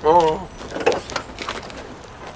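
A short spoken exclamation in a wavering voice, followed by a few light knocks and clicks.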